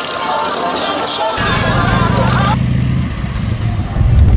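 Rap music with voices. About a second and a half in, a bagger motorcycle engine comes in with a low, pulsing rumble that lasts about a second and a half.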